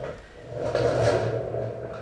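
Rustling and shuffling of a person settling in close to the camera, a noisy swell that builds about half a second in and fades near the end.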